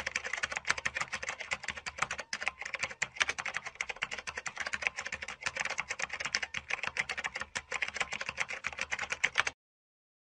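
Typing sound effect: a fast, steady run of key clicks that cuts off suddenly near the end.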